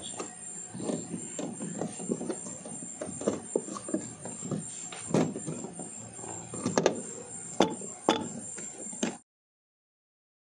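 Cloth wiping and hands handling a refrigerator's inner back panel: rubbing with irregular knocks and clicks, a few sharper ones after about five seconds, over a faint steady high whine. The sound cuts off abruptly a little after nine seconds.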